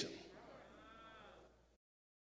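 Near silence: the last of the preacher's amplified voice dies away in the room, and a faint voice-like sound rises and falls about a second in. Then the sound cuts out completely.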